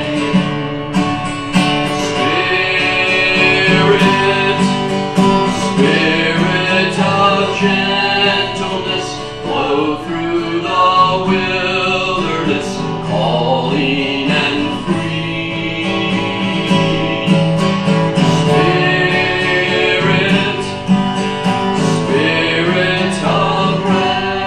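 Acoustic guitar strummed as accompaniment, with voices singing a hymn over it.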